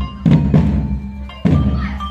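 Marching drum band playing: two heavy bass-drum strokes about a second apart, with a high held melody line stepping from note to note on top.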